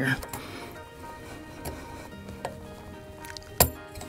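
A retaining clip on a tractor light fixture pops off with one sharp snap near the end, after a few faint clicks of working at it. Quiet background music runs underneath.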